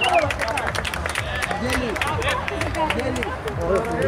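Several voices calling and shouting across a small-sided football pitch, overlapping one another, with scattered short sharp knocks.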